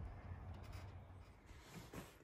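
Quiet outdoor background: a faint steady low rumble and hiss with no clear event, a soft click at the very start and a few faint ticks.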